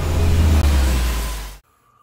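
A loud, deep rumbling rush of noise that swells and then cuts off abruptly about one and a half seconds in.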